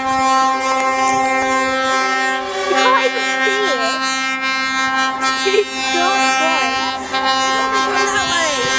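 A lorry air horn held in one long, unbroken blast, with people's voices calling over it.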